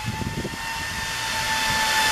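A pair of Love Jugs electric cooling fans mounted on a Harley-Davidson's V-twin cylinders, running with a steady whir and a thin high whine, growing slowly louder.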